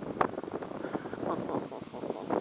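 Wind buffeting the microphone of a camera on a moving bike, a rough, gusty rush that rises and falls unevenly.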